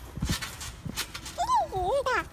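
A toddler's high, wavering squeal that rises and falls twice near the end, after a couple of soft thumps.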